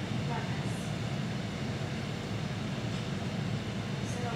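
Steady low rumble of background noise, with faint distant voices near the start.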